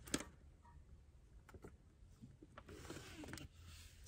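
Near silence, with faint rustling and a few light ticks as shredded cheese is sprinkled by hand onto a pizza crust.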